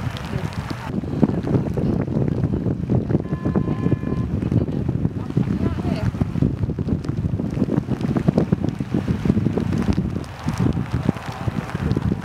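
Wind buffeting the camera microphone, a steady rumbling noise throughout. A short, faint tone sounds about three seconds in.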